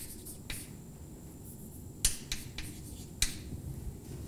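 Chalk writing on a blackboard: a few sharp taps and short scrapes as symbols are put down, the loudest tap about two seconds in and another just after three seconds.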